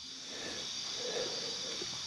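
Crickets chirring faintly and steadily under a soft hiss.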